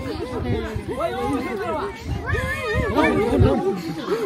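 Many people's voices overlapping: a crowd chattering.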